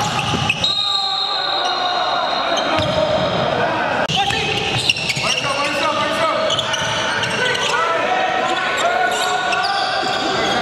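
Live basketball game sound in a large gym: a ball being dribbled on the hardwood floor, sneakers squeaking and players' voices calling out, all echoing in the hall.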